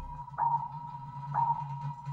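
Cartoon sonar-style ping sound effect: a clear, high ping that sounds twice, about a second apart, each fading out, over a low steady hum.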